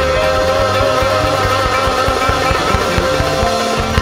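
Live Middle Eastern music led by an oud, quick plucked notes over held tones and band accompaniment.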